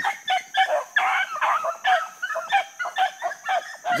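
A pack of rabbit dogs baying on the track of a freshly jumped rabbit: many short, high calls overlapping several times a second.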